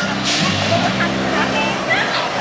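Children's voices calling and chattering over steady background music.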